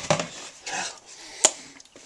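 A person eating leftover chocolate cake batter straight from a mixing bowl: wet, noisy mouth sounds in short bursts, with one sharp knock about one and a half seconds in.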